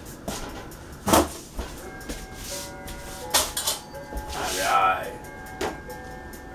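A man singing a wordless tune, with a few sharp knocks from kitchen work at the counter; the loudest knock comes about a second in.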